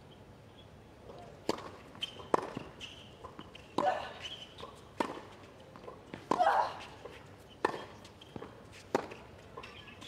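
Tennis rally on a hard court: rackets striking the ball and the ball bouncing, a sharp hit about every second or so. There are a couple of short player grunts with the shots, about four seconds in and again midway.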